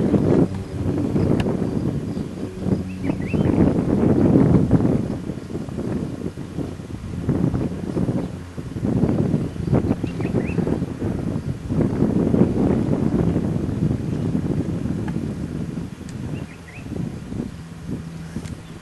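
Wind buffeting the microphone in repeated gusts that swell and fade.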